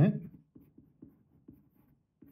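Wooden pencil writing on paper: a run of faint, short scratching strokes as letters and symbols are written.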